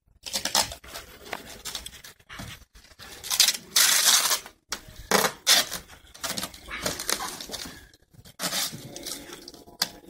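A cardboard box being cut with hand shears: a run of irregular cutting and scraping noises as the cardboard flap is worked. The loudest stretch is about four seconds in.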